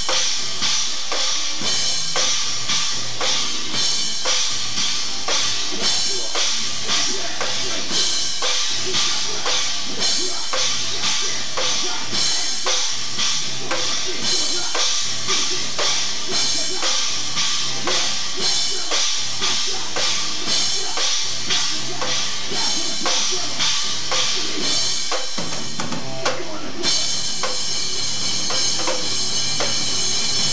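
A rock band playing live with the drum kit to the fore, kick and snare keeping a steady beat. Near the end the cymbals come in and ring on continuously over the beat.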